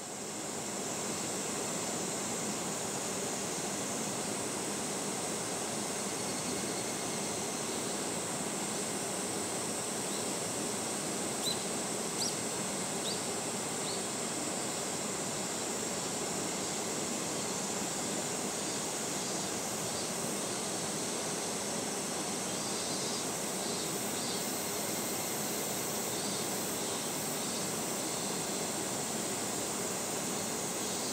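Steady outdoor nature ambience: an even wash of noise with a constant high insect drone, and a few short high chirps about eleven to fourteen seconds in.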